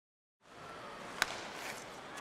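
Dead silence for about half a second, then ice-hockey arena ambience fades in: a faint, even crowd murmur with one sharp crack about a second in.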